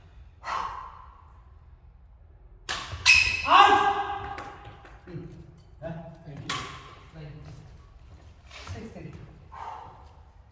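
Players' raised voices and calls in an echoing sports hall, loudest about three to four and a half seconds in, with a few sharp smacks of badminton rackets striking a shuttlecock.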